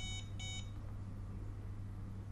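Ingenico iWL250 card terminal giving two short electronic beeps in quick succession, its prompt to remove the card after a declined payment.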